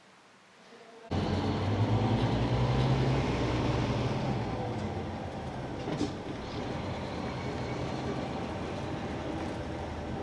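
Engine and road noise of a moving vehicle heard from inside, cutting in suddenly about a second in as a loud low rumble that eases a little after a few seconds. There is a single short click about six seconds in.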